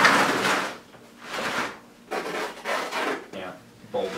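Wooden canvas stretcher frame scraping and sliding across a concrete floor as it is shifted and lifted, with one long scrape at the start and several shorter scrapes after.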